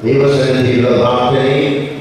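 A man's voice chanting on a steady, held pitch into a handheld microphone, with the words drawn out rather than spoken, fading near the end.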